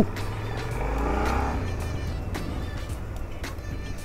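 A car passing close by the motorcycle, its engine sound swelling to a peak about a second in and fading away, over the low steady running of the motorcycle's own engine.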